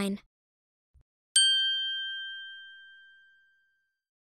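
A single bell-like chime, struck once about a second and a half in and ringing down over about two seconds: the cue that comes before each numbered item in the listening exercise.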